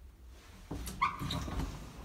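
Lift doors opening as the car stops at a landing: a short high squeak about a second in, with sliding and rattling of the door panels.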